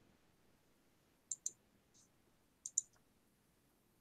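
A computer mouse being clicked in two quick double-clicks, with a fainter single click between them; the room is otherwise quiet.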